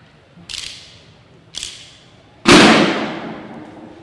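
Banda de guerra drum line striking three sharp unison hits about a second apart, the third much louder and ringing out as it fades.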